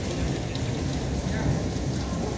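Steady low rumble of several electric WhirlyBall bumper cars driving around a hard floor, with voices in the background.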